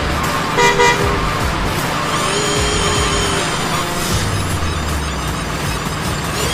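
Two short truck-horn toots about half a second in, then a longer held tone around two seconds in, over background music with a steady low rumble.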